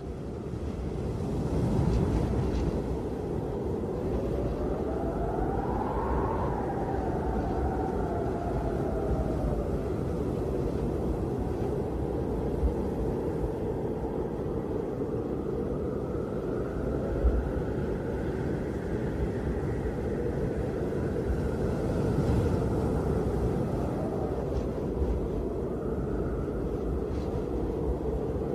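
Low, steady rumbling noise with a faint tone that slowly rises and falls about six seconds in, and swells more gently later; an ambient sound-effect passage in a rap track's outro rather than music.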